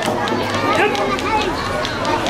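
Crowd of spectators talking and calling out over one another, with a few scattered sharp clicks.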